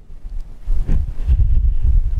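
Wind buffeting the microphone: an uneven low rumble that swells from about half a second in.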